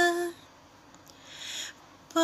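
A woman singing unaccompanied holds the last note of a line briefly, then pauses and takes an audible breath before the next phrase.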